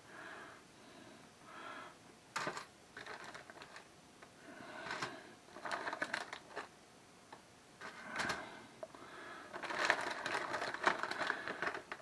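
A thin plastic bag crinkling and rustling in short, faint spells, with a few light clicks, as frozen garlic toast slices are pulled out of it and laid on a baking sheet. The rustling gets busier near the end.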